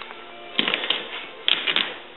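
Two quick runs of sharp metallic clicks about a second apart: a hand working the chrome latches of a car's rear trunk, which is stiff to open.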